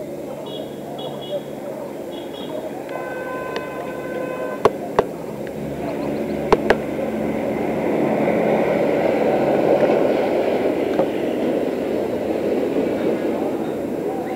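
Busy background murmur of indistinct voices and noise that grows louder partway through. A short series of high beeps comes near the start, a steady pitched tone follows for about a second and a half, and four sharp clicks come in two pairs.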